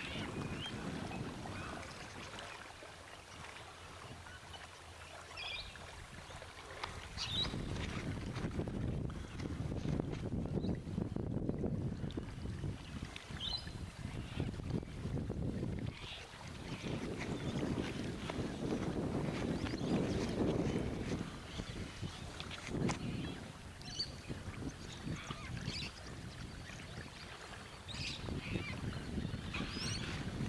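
Wind buffeting the camcorder's on-board microphone in gusts, a low rumble that rises and falls over several seconds, with a few short bird chirps scattered through.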